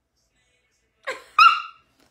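A dog giving a short, high-pitched yelp in two quick parts about a second in.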